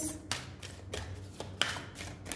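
Tarot cards being handled as cards are drawn from the deck: a series of light taps and clicks of card against card and table.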